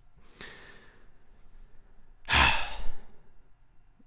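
A man's breath drawn in faintly, then a heavy exasperated sigh about two seconds in.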